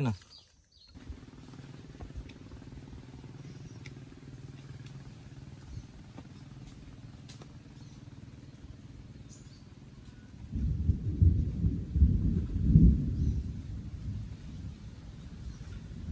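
Steady low drone, then about ten seconds in a loud, rolling rumble of thunder lasting about three seconds.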